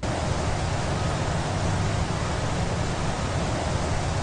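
Steady, even rushing noise with a low rumble underneath. It sets in abruptly and holds at one level.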